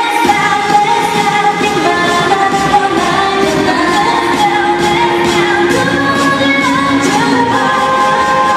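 Recorded K-pop dance track playing loud through stage speakers: a sung melody over a steady, driving beat, backing a dance cover routine.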